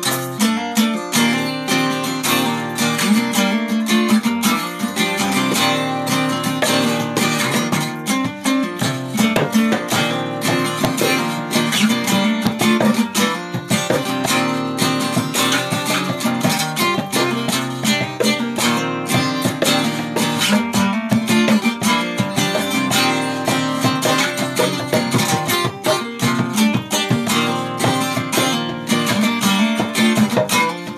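A guitar strummed and picked steadily in an instrumental passage with no singing.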